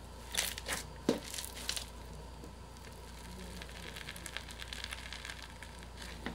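Foam-bead slime being squeezed and pressed by hand, its polystyrene beads crackling and crunching. There are a few sharp crackles in the first two seconds, then a denser run of fine crackles.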